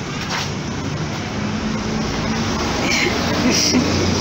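A car's engine running hard with tyre noise as the car spins around on the street, growing louder toward the end.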